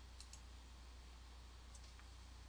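Near silence over a low steady hum, with two faint double clicks of a computer mouse button: one just after the start and one near the end.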